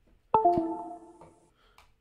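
A computer's two-note descending chime, a higher tone then a lower one, ringing out over about a second: a USB device-change alert as the USB phone adapter is connected or disconnected.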